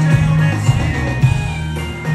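Live country-rock band playing an instrumental passage with no vocals: electric guitars over a steady bass line, with drum hits at a regular beat.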